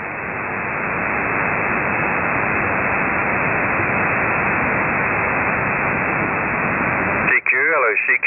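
Communications receiver hissing with steady band noise between transmissions on an amateur-radio voice channel; the hiss swells over the first second or so, then holds level. About seven seconds in, a station's voice breaks in over it.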